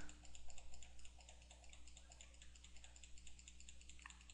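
Faint computer mouse clicks in quick succession as curve points are placed one after another, frequent at first and thinning out in the second half.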